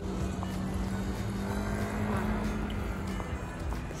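Background music with one held low note that stops shortly before the end, over the steady noise of street traffic.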